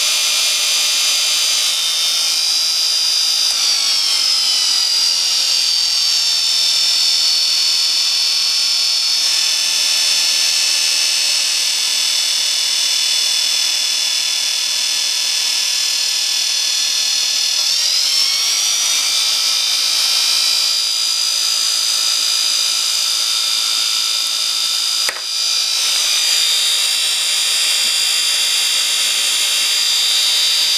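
Small brushed DC motor driving a fan load, running with a steady high whine and air noise. Its pitch sags about four seconds in and climbs again sharply a little past halfway. There is a brief click near the end.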